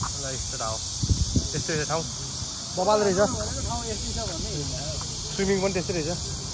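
Men's voices talking in short snatches, over a steady high-pitched insect drone. A few low rumbles come about a second in.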